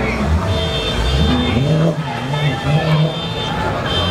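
Tuned BMW M3 GTS V8 revving in a series of blips, each one rising in pitch, holding briefly and dropping back, with crowd voices over it.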